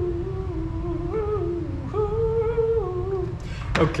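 A man humming a tune to himself, holding notes that step up and down, over a steady low background rumble. A sharp tap comes near the end.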